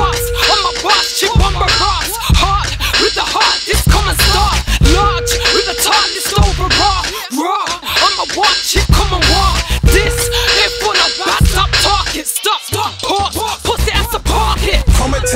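Hip hop track: rapped vocals over a beat with deep sub-bass notes, the bass dropping out briefly twice.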